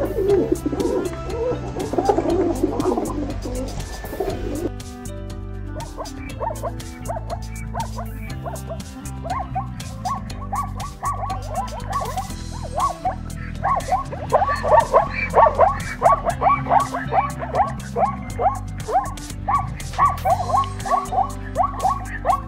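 Background music with sustained low notes throughout. Over it, a pigeon cooing in the first few seconds, then from about nine seconds in, a zebra's barking call: a fast run of short, yelping barks that grows louder past the middle.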